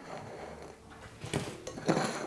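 Quiet handling of a small ceramic mortar lifted off a table, with two short light knocks in the second half.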